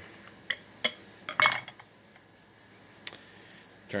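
Plastic cover being taken off a hand priming tool's primer tray: a few light plastic clicks and clinks, one of them ringing briefly about a second and a half in.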